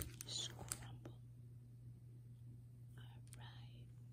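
Faint handling sounds of miniature plastic toy pieces and their packaging: a sharp click right at the start and another just under a second in, with soft hissy rustles between them and again about three seconds in.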